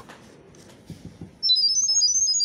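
A phone setup app plays a sound-wave Wi-Fi pairing signal for an IP camera: a fast run of short, high-pitched beeps hopping between pitches, starting about halfway through after a quieter pause that opens with a soft click. The tones carry the Wi-Fi network name and password to the camera.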